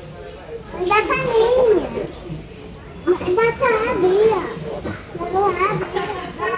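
A young child talking in a high voice, in three short stretches with pauses between.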